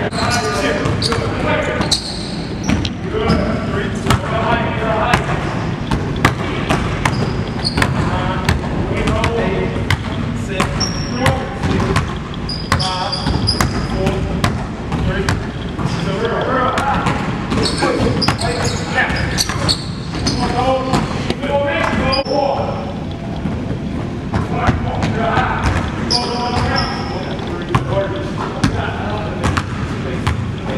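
Basketball bouncing on a hardwood gym floor, many irregularly spaced bounces, with voices talking underneath.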